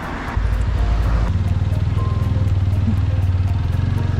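Motorcycle engine running steadily while riding, coming in suddenly about a third of a second in, with wind noise over it.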